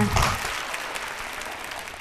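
Studio audience applauding, dying away over the two seconds before it is cut off.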